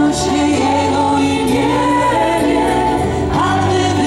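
Live worship music played through an outdoor PA: several voices singing a slow, sustained praise song with band accompaniment.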